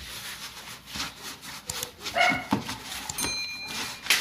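Hands working bread dough on a floured surface, a steady rubbing with a few soft thuds. A short high-pitched cry comes about two seconds in, and a brief high steady tone a little after three seconds.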